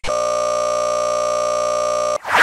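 A steady horn-like tone, rich in overtones, holds one unchanging pitch for about two seconds and then cuts off suddenly.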